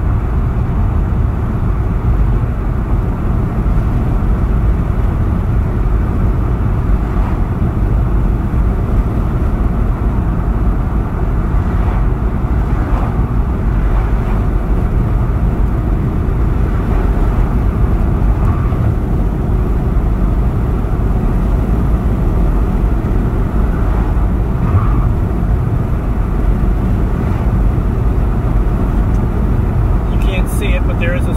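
Steady low rumble of road and tyre noise inside the cabin of a car driving along a highway.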